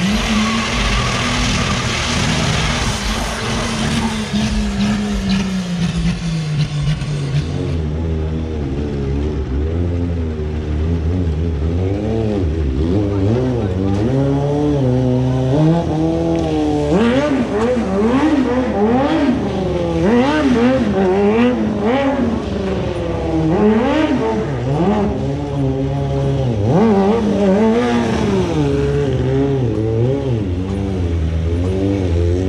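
A car drifting, its tyres squealing and its engine held at high revs, for the first several seconds. After an abrupt change about eight seconds in, a motorcycle engine is revved up and down over and over, its pitch rising and falling about once a second, as the rider performs stunts.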